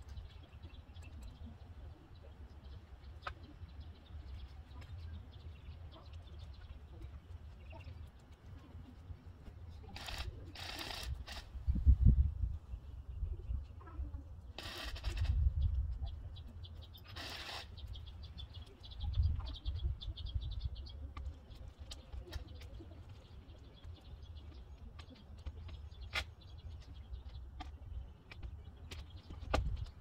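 Outdoor ambience of faint birdsong over a low, shifting rumble of wind on the microphone. A few brief louder noises come in the middle stretch.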